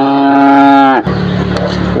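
A young calf mooing: one long, steady call of about a second that cuts off sharply, followed by a lower steady hum.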